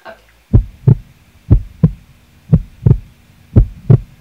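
Heartbeat sound effect: four double thumps, about one a second, over a low hum, used as a suspense beat.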